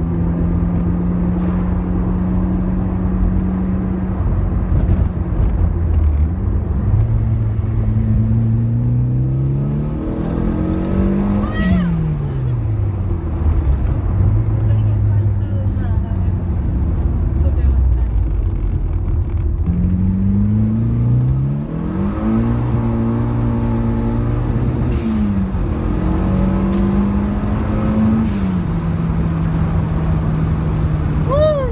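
Turbocharged Peugeot 106 GTI engine heard from inside the cabin, pulling hard on low wastegate boost of about 0.4 bar. The revs climb in two long pulls, one starting about a quarter of the way in and one about two-thirds in, and each ends in a sharp drop in revs.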